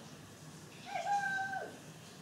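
A single drawn-out, high-pitched call, about a second long, starting a little before a second in, holding its pitch and then falling away.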